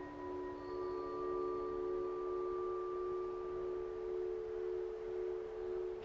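Calm background music of several steady, overlapping held tones. A higher tone comes in about half a second in and fades out before the end.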